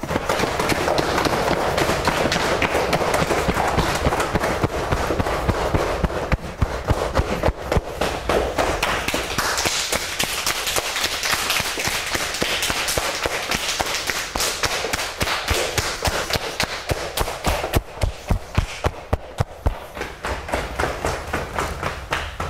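Cupped hands patting along the body in a qigong cupping self-massage: rapid, continuous pats, fewer and more separate in the last few seconds.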